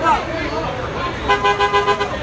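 Vehicle horn honking in a quick run of about five short toots, a little over a second in, over raised voices in the street.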